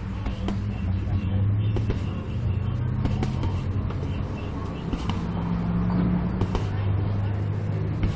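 Punches and kicks striking a hanging heavy bag: irregular thuds every second or so, over a steady low hum.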